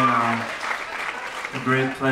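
Audience applause, with a man's voice coming through the microphone twice, each time for about a second, once at the start and once near the end.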